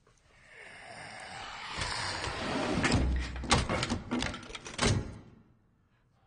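An infected creature's rasping, hissing scream that builds over a few seconds, breaks into harsh rattling strokes and cuts off about five seconds in.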